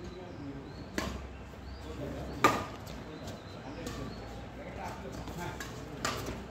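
Badminton rackets striking a shuttlecock in a rally: a sharp hit about a second in and a louder one a second and a half later, followed by fainter taps.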